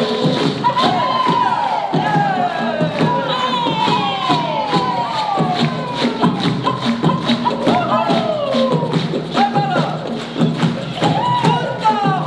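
Live performance of hand drums and a gourd shaker keeping a steady beat, under voices calling out in long, falling glides, with an audience of children adding crowd noise.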